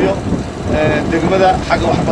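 A man speaking into a microphone over a steady low rumble.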